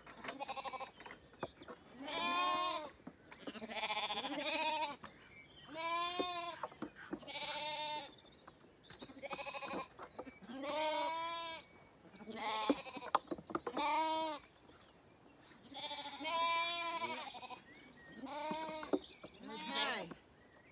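Zwartbles lambs bleating repeatedly, about a dozen quavering calls, one every second or two, with a few light knocks between them.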